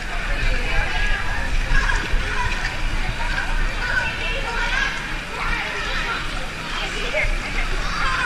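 Swimming-pool ambience: water splashing and sloshing from swimmers kicking monofin mermaid tails, with indistinct voices in the background and a steady low rumble underneath.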